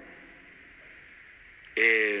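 A pause in a man's speech with only faint steady background hiss, then his voice resumes loudly near the end.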